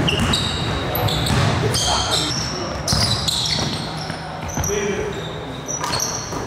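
Pickup basketball on a hardwood gym floor: many short, high sneaker squeaks and the ball bouncing, with players' voices in the background of a large echoing hall.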